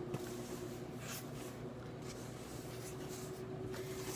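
Dry sugar and cornstarch being stirred in a stainless steel bowl, a faint, repeated scraping swish of the utensil through the dry mix. A faint steady hum runs underneath.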